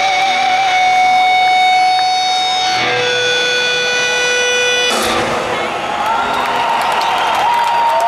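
Live rock band holding a sustained final chord, which shifts to a second held chord about three seconds in. About five seconds in the music breaks off and a large crowd cheers.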